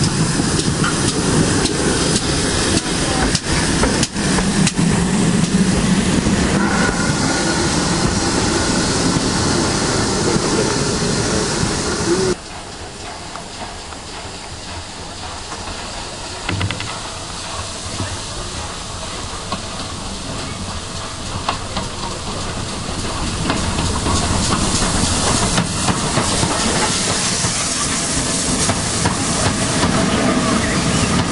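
A steam locomotive running into a station with steam hissing. About twelve seconds in, this cuts to the quieter running noise of a train heard from a carriage window, growing louder near the end as a rake of coaches passes close by.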